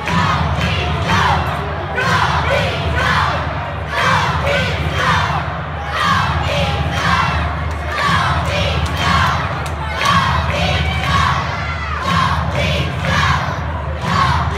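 Hockey arena crowd shouting and cheering, the shouts swelling in regular waves about once a second over a steady low rumble.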